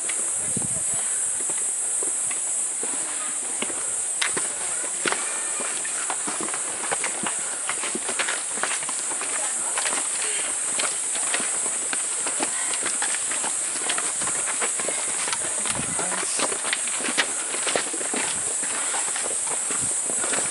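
Footsteps of hikers on a stone-stepped mountain trail, irregular scuffs and clicks of shoes on rock and grit, with people talking at a distance over a steady high hiss.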